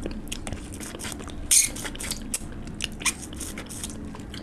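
Close-miked mouth sounds of biting and chewing curried chicken leg meat off the bone: many wet smacks and clicks, with one louder crunch about one and a half seconds in.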